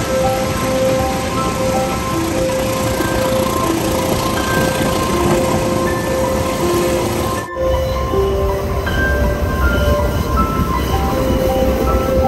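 Gentle piano music with short, soft notes, laid over the steady running noise of a heritage passenger train on the rails. About seven and a half seconds in, the sound cuts to the inside of a wooden carriage, and a deeper rumble grows under the music.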